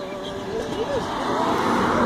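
A car passing close by on the road, its tyre and engine noise swelling to a peak near the end.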